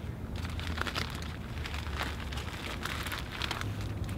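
Clear plastic bag packed with moist soil crinkling in short, irregular rustles as hands squeeze and tighten it around a fig branch.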